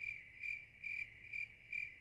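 Cricket chirping sound effect, a high chirp repeating evenly about twice a second: the comedy 'crickets' gag for a joke met with silence.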